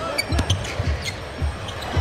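A basketball being dribbled on a hardwood court, several low bounces, over steady arena crowd noise with music in the background.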